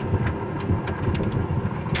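The SRM X30 van's 1.5-litre turbocharged inline four-cylinder engine idling steadily, heard from inside the cabin, with a few faint clicks partway through.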